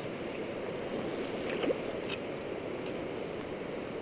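Steady rush of a rocky river's current flowing past, with a few faint ticks near the middle.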